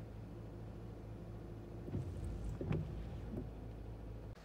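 Car running with a steady low hum, heard from inside the cabin, with a few faint knocks about two to three seconds in.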